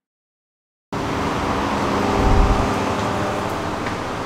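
Silence for about the first second, then a steady hum and hiss of indoor mall-corridor background noise with a few faint steady tones, typical of air conditioning and ventilation.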